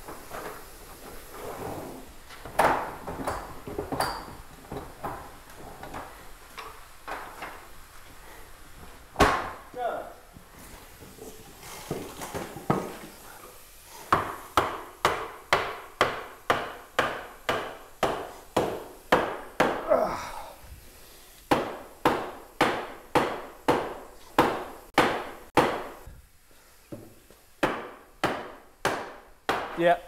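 Hammer blows on wood as the steamed oak board is secured in the wooden bending jig. Scattered knocks and clatter at first, then from about halfway a steady run of sharp strikes at roughly two a second, with two short pauses.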